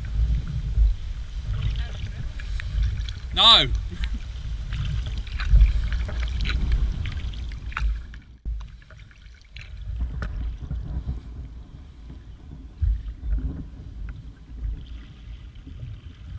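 Kayak paddle strokes dipping and dripping in lake water, with wind rumbling on the deck-mounted camera's microphone. A short shouted call rings out about three and a half seconds in.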